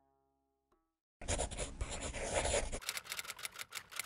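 A burst of crackling hiss about a second in, lasting about a second and a half, then a quick run of clicks, about six a second, to near the end: an editing sound effect laid under an animated neon title. Before it, the last plucked-string note of the background music fades out.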